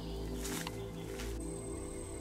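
Background music of sustained low droning tones, with a thin high steady tone coming in about two-thirds of the way through.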